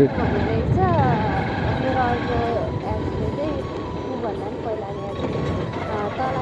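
Motorcycle riding along, a steady rumble of engine and wind noise, with a voice talking faintly over it.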